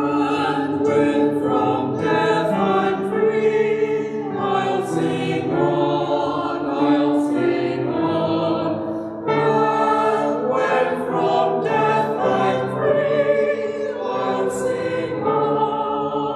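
Small church choir singing, holding sustained notes that move from chord to chord, with a brief pause for breath about nine seconds in.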